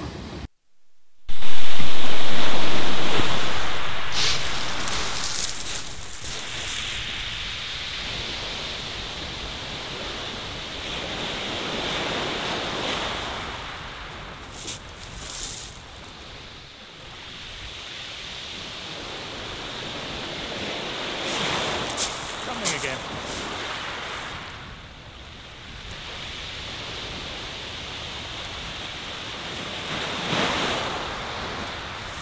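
Small waves breaking and washing up a shingle beach, with wind buffeting the microphone. A loud rush comes in about a second and a half in and fades over several seconds, then the surf swells and eases, with short crackles here and there.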